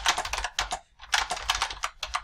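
Typing on a computer keyboard: a quick run of keystrokes, a short pause about a second in, then more keystrokes.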